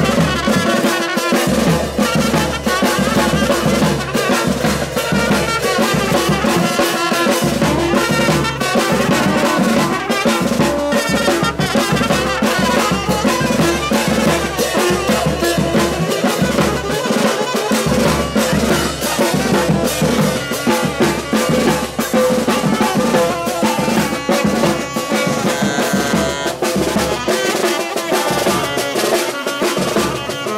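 Live band music: horns playing the melody over drums and cymbals, continuous and loud.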